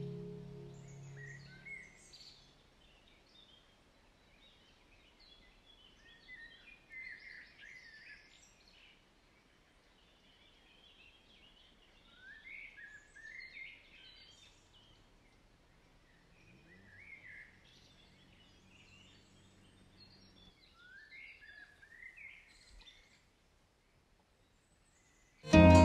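Faint birds chirping and calling, short rising calls every second or two, as soft music fades out in the first two seconds.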